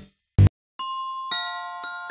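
Background music: a rock track cuts off abruptly, with one short burst of sound just after. About a second in, a bell-like mallet melody starts, its ringing notes struck about twice a second.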